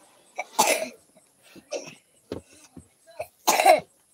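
A person coughing: two loud coughs, one about half a second in and one near the end, with a few faint short sounds between.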